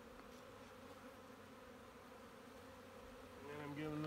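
Honey bees buzzing around an opened hive: a faint, steady hum. A man's voice starts near the end.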